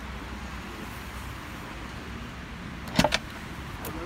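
Car door latch clicking: a quick run of three sharp clicks about three seconds in and one more click just before the end, as the rear door of a Sono Sion electric car is unlatched and swung open, over a steady low background hum.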